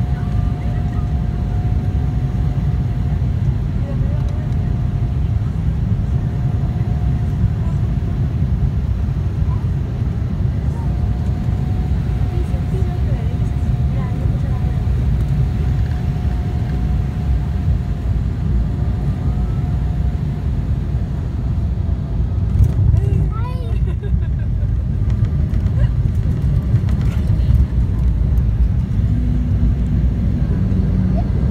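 Cabin noise inside an Embraer 195 airliner on final approach and landing: the steady rumble of its GE CF34 turbofan engines and the rushing air, with a steady whine from the engines. A brief thump about two-thirds of the way in marks the wheels touching down on the runway.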